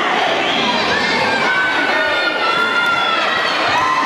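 Crowd noise in a sports hall: many voices chattering and shouting at once, with one long drawn-out call rising above them in the middle.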